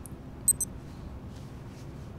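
Quiet room tone with two short, sharp clicks in quick succession about half a second in.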